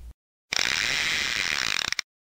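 A short mechanical ratcheting, clattering sound effect on the channel's title card, lasting about a second and a half, starting and stopping abruptly between stretches of dead silence.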